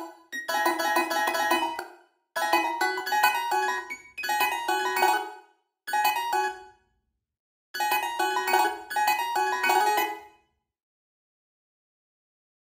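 CinePiano sampled piano in FL Studio, playing short chord-and-melody phrases in A minor. It plays in five separate bursts that stop and start as the notes are played back.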